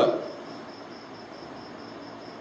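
A cricket chirping in the background: a faint, even, high pulsing trill over steady room hiss. The lecturer's voice trails off at the very start.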